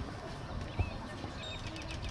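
Outdoor background noise with a steady low rumble, a single dull knock a little under a second in, and a few faint, short, high chirps.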